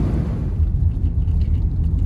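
Steady low road rumble inside a car's cabin, tyres on a snow-covered road with the engine running under them. The car is on studded winter tires.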